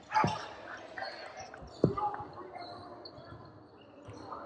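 Two basketball bounces on a hardwood gym floor, about a second and a half apart, the second louder, over background voices in the gym.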